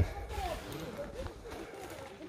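Faint, indistinct background voices of people talking over a low outdoor haze.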